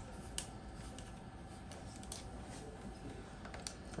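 Faint, scattered light clicks of an Allen key and a plastic headrest shell being handled as the shell's screws are drawn tight around a microscope optical head, over a low steady hum.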